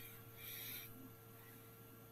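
Near silence: faint room tone with a steady electrical hum, and two soft, short hisses in the first second.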